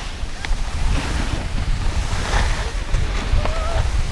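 Wind rumbling on an action camera's microphone, mixed with the steady hiss of skis sliding over soft snow.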